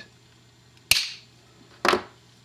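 Small cutters snipping through the leg of an LCD mounting bracket: a sharp snap about a second in, then a second, weaker snip near the end.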